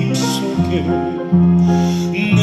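Digital piano playing a slow ballad accompaniment in held chords that change in steps, under a singer's voice with wavering vibrato.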